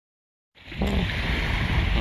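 Dead silence for about half a second, then steady wind noise buffeting the microphone, mixed with the wash of small waves on a lakeshore.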